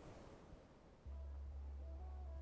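Faint room noise, then about a second in quiet background music starts with a deep held bass note and faint higher notes above it.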